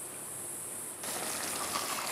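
Soft, steady hiss of a pot of tomato and eggplant stew simmering on a gas stove.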